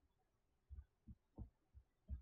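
Near silence with about four faint, short, low thumps spaced through the second half, from a computer mouse being handled and clicked on the desk.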